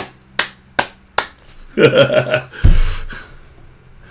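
Four sharp hand smacks a little under half a second apart, then a man's short laugh and a dull low thump.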